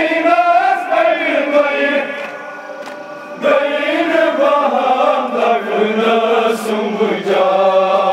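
Group of men chanting a Kashmiri noha, a Muharram lament, together in a slow rising-and-falling melody. The chant drops quieter a little after two seconds in and swells back about a second later. A few sharp slaps cut through it, from hands beating on chests (matam).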